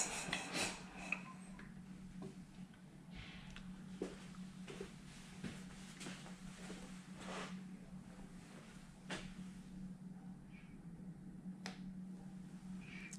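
A few light metallic clicks in the first second as the engine is turned over by hand, then only scattered small clicks and knocks from handling at the bench, over a steady low hum.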